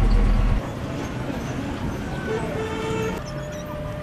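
Bus engine rumbling as heard from inside the passenger cabin, loud for the first half-second and then settling lower. About two seconds in a vehicle horn sounds for about a second, and street traffic noise follows near the end.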